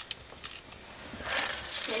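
Fire in a fireplace crackling faintly, with a few sharp pops in the first half second. A voice comes in at the very end.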